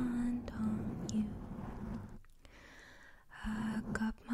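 Woman singing softly in a breathy near-whisper close to the microphone, holding a low note. She drops to a hush midway and comes back in with the held note near the end.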